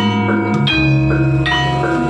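Javanese gamelan playing a melody: bronze metallophones and kettle gongs struck with mallets, their notes ringing on. About two-thirds of a second in, a deep low stroke comes in and hums through the rest.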